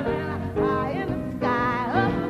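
Female jazz vocalist singing short phrases that bend and leap in pitch, over a big band accompaniment.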